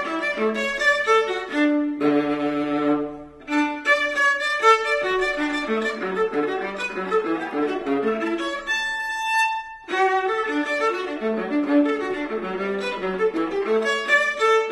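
Violin and cello playing a baroque set of variations: the violin runs through quick passages over a bowed cello bass line, with a held low note about two seconds in, a short break, and a long sustained high violin note a little past the middle.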